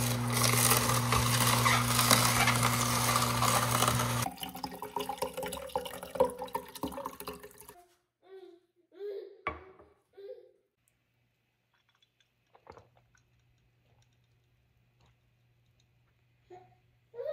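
Horizontal masticating juicer running as celery stalks are pushed down its chute, the motor humming steadily over the crushing for about four seconds. The hum then drops away, leaving quieter crackling of crushed celery, a few short separate sounds, and then near silence with only a faint hum.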